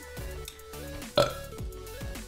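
A man burping once, a short loud burp about a second in, over quiet background music.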